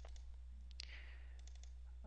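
A few faint, scattered computer mouse clicks, double-clicking to open folders, over a low steady hum.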